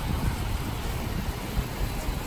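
Steady rushing noise of ocean surf, with wind rumbling on the microphone.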